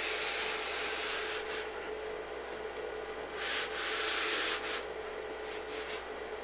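A chalkboard being wiped clean by hand, an eraser rubbed across it in strokes, with the longest stretches of rubbing at the start and again around the middle.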